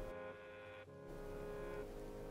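Faint background music of held, steady notes, heard in a pause between spoken lines.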